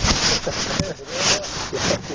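Repeated rough scraping or rubbing noise, about two strokes a second.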